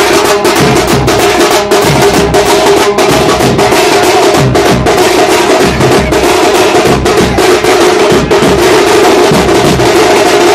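A group of stick-beaten drums playing a loud, fast, unbroken rhythm with dense rapid strokes over a steady drone.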